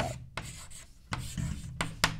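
Chalk writing on a chalkboard: a run of short, irregular scratching strokes as letters are written.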